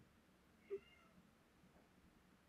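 Near silence: room tone, with one short pitched squeak about three-quarters of a second in.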